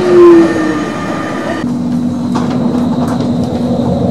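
Electric tram sounds: street noise at a tram stop with a short, loud pitched sound just after the start. Then, after a sudden cut, the inside of a moving tram's driver's cab, with a steady low hum from the tram's running gear and drive.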